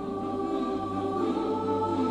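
Mixed choir singing a cappella: after a brief breath, a new chord comes in and is held in sustained tones, one upper voice shifting pitch partway through.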